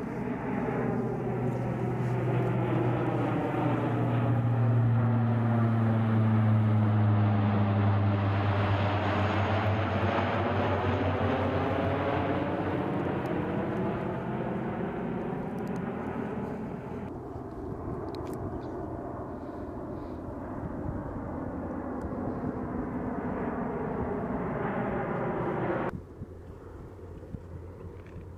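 C-130 Hercules turboprop transport passing low overhead, its four propeller engines droning with a strong low hum. The sound builds to its loudest in the first third, with a sweeping swirl in tone as the aircraft passes, then slowly fades.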